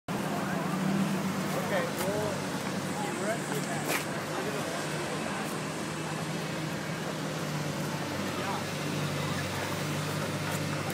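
Roadside traffic noise, a steady low hum, with indistinct voices in the first couple of seconds and two sharp clicks.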